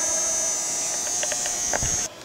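A steady electrical buzz with several held tones and a high hiss over it, with a few faint clicks and a low thump near the end.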